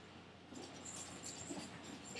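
Faint rustling and light ticks of hands handling small food pieces at a counter, starting about half a second in.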